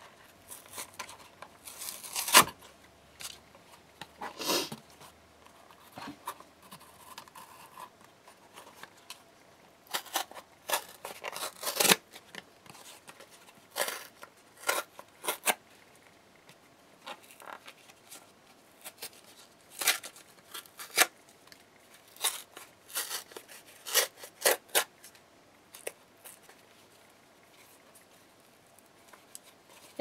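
Cardboard being torn and peeled apart by hand in a series of short, irregular rips with pauses between them, to give the pieces torn, distressed edges.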